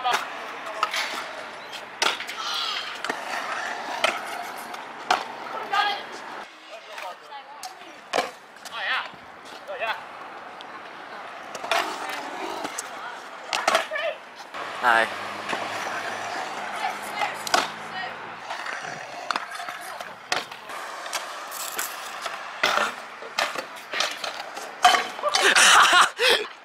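Stunt scooter wheels rolling on concrete, with repeated sharp clacks and knocks of decks and wheels landing on the ramps and coping. Near the end comes the loudest moment, a crash of a rider falling and the scooter clattering across the concrete.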